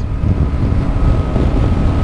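Steady wind noise on the microphone of a moving motorcycle, mixed with the low noise of its engine and tyres on the road.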